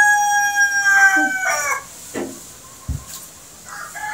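A rooster crowing, its long drawn-out final note held steady and fading out about two seconds in. A couple of faint knocks follow.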